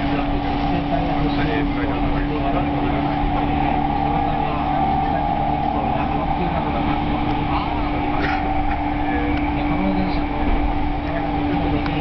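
Cabin noise of a moving electric commuter train: steady running rumble of wheels on rails under a constant motor hum.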